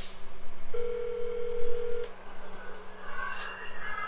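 Telephone call tones from a smartphone dialing, played back through laptop speakers: a steady held tone lasting about a second, starting just under a second in.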